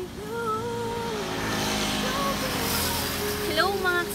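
A road vehicle passing, its noise swelling and fading in the middle, over background music with a sung or hummed melody line.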